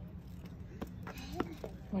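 Steady low rumble with a few small clicks and a faint, short vocal sound about a second in; a voice begins to speak at the very end.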